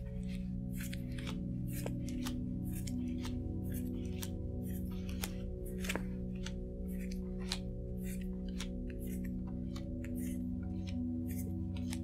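Playing cards being dealt one by one from the deck onto a table: short soft slaps and slides, about two or three a second. Underneath is quiet background music of sustained, steady tones.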